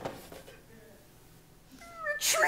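A faint, short, high vocal sound rising in pitch near the end, after a brief knock at the start.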